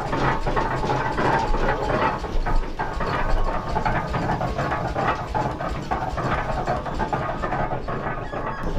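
A 1908 steam donkey logging engine running under load as it winds cable onto its drum to drag logs: a dense, continuous clatter of gears and machinery over a steady low rumble.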